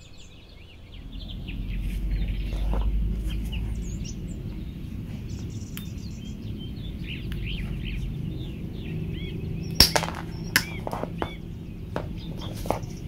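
Small birds chirp steadily in the background. A low rumble swells in the first few seconds. About ten seconds in comes one sharp snap as steel combination pliers cut through a black electrical cable, followed by a couple of lighter clicks.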